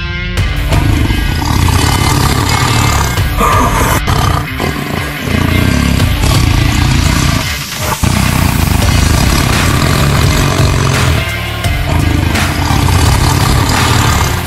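Loud intro theme music with a heavy, driving sound, briefly dipping about eight seconds in.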